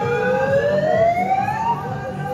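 A siren winding up, one smooth tone rising steadily through about an octave over most of two seconds, with music playing underneath.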